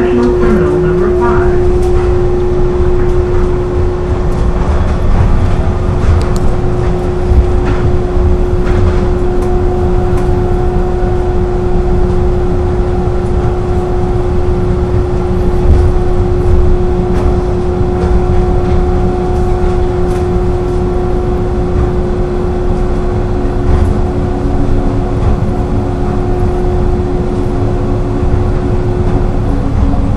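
Automated airport people-mover tram running along its guideway, heard from inside the front car: a steady low rumble of the running gear under a constant electric hum. A second, higher tone joins for a stretch in the middle, and the hum drops to a lower pitch near the end.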